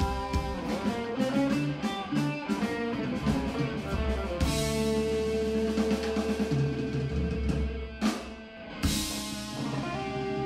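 Live rock band playing an instrumental: electric guitar, bass guitar and drum kit. A busy passage with steady drum strokes gives way about four seconds in to a long held chord under a cymbal crash, with two sharp hits near the end.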